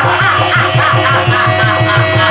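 Live stage-drama music: a drum played in a fast, even beat under a repeating melody.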